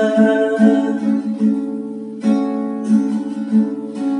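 Acoustic guitar strumming chords as accompaniment to a man singing a worship song.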